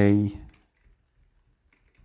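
The last of a spoken word, then near silence broken by a few faint computer keyboard clicks.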